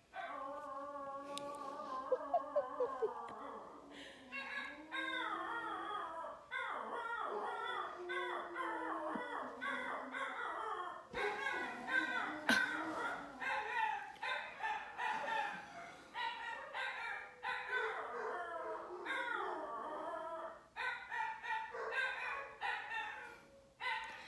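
Several dogs howling together, set off by sirens outside. One long wavering howl comes first, then from about four seconds in a chorus of shorter, overlapping howls and yips.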